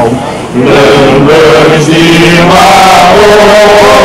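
A group of men's voices chanting in unison on long held notes, very loud, with a brief break about half a second in.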